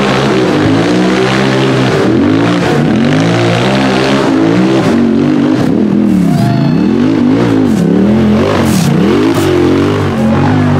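Off-road race buggy's engine revving hard, the revs dropping and climbing again over and over as it claws up a steep, muddy wooded slope.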